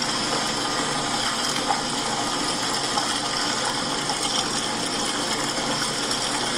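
Wastewater pouring steadily from nearly full 6-inch and 3-inch discharge pipes into a drain: an even, unbroken rush of water.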